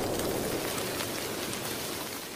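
Rain sound effect, an even hiss with scattered faint crackles, fading out steadily as a track ends.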